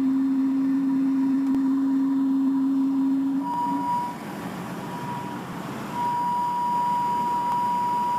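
Sustained electronic tones closing out a hardcore song recording, over a faint hiss. A low steady tone holds for about four seconds and stops. A higher steady tone takes over, broken at first and continuous from about six seconds in.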